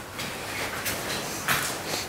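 Footsteps and shuffling of people walking across a floor laid with protective boards, with a couple of sharper scuffs about a second in and again near the end.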